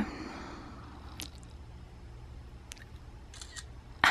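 Quiet room tone with a steady low hum and a few faint clicks from handling the handheld camera.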